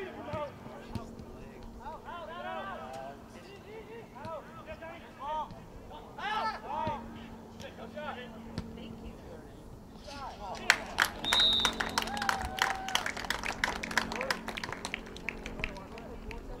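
Players and spectators shouting during play. About ten seconds in, a crowd starts clapping and cheering after a goal, and there is a brief high whistle blast.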